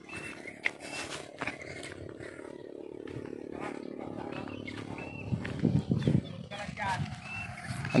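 Small 125cc engine of a homemade mini jeep running in the distance, a steady hum that fades after a few seconds, over scattered knocks and rustles.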